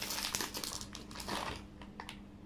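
Food wrapper crinkling as it is handled and opened: a quick run of crackles for about a second and a half, then it stops.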